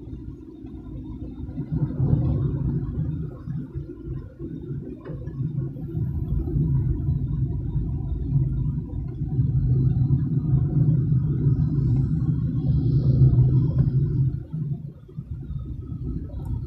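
Low rumble of a car being driven, heard from inside the cabin: engine and road noise that swells about two seconds in, stays loud through the middle and eases near the end.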